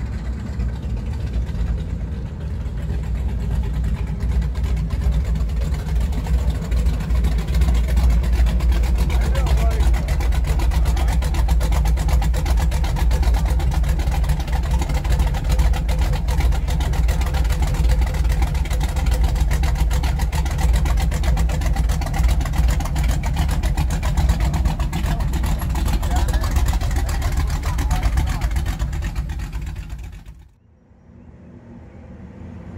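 A car engine idling with a deep, steady rumble, growing louder over the first several seconds and then holding. Voices murmur faintly in the background.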